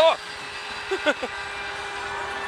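Steady electronic din of pachislot machines in a slot parlour, with a held electronic tone coming in about a second in. A man makes short vocal sounds at the start and about a second in.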